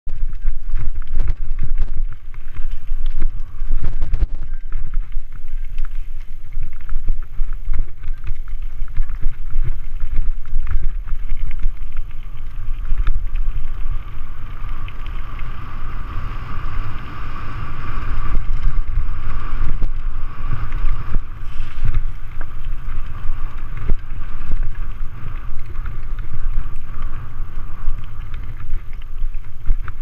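Riding a mountain bike over a rocky trail and a gravel track, heard from a camera on the bike or rider. Wind rumbles heavily on the microphone, the tyres crunch over stones and gravel, and the bike rattles and knocks over the bumps. A steady hiss swells through the middle stretch.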